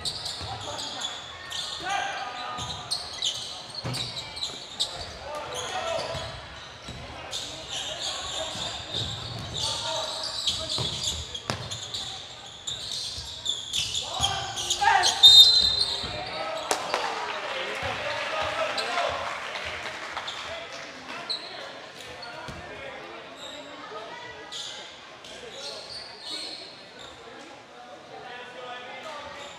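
Basketball game play on a hardwood gym court: the ball bouncing, sneaker squeaks and players' and spectators' voices ringing in a large hall. It is loudest about halfway through, with a short high squeal and a shout, then a few seconds of crowd noise.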